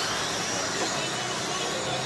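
Radio-controlled late model race cars running laps on a dirt oval, with a steady high motor whine and tyre noise on the dirt.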